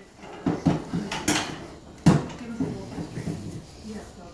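Hollow knocks and clatter of a plastic toy basketball hoop being pushed and bumped over a wooden floor. There are several uneven knocks, the loudest about two seconds in.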